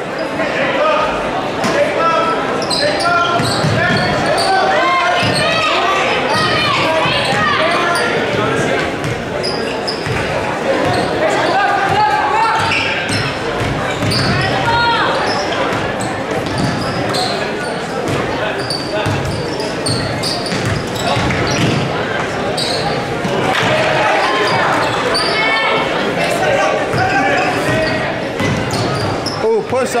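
Basketball bouncing on a hardwood gym floor during play, with players' and spectators' voices echoing through a large hall.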